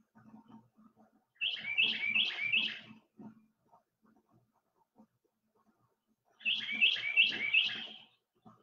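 A bird singing twice, each song a quick run of four repeated two-part notes.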